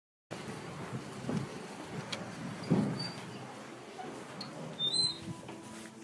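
Handling noise from a phone camera being carried: irregular rustling with a few soft knocks, the loudest about three seconds in.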